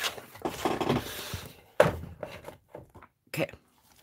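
Wooden picture frames being handled: about a second of rubbing and sliding noise, then a sharp knock as a frame is set down, just under two seconds in.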